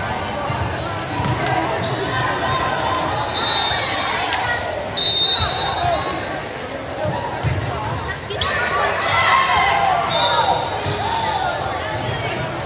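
A volleyball rally in a gymnasium: the ball being struck several times, sharp hits echoing in the hall, among players' and spectators' voices calling and talking.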